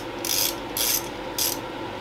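Small hand ratchet with a bit clicking in three short bursts as it is swung back and forth, undoing a bottom engine bolt.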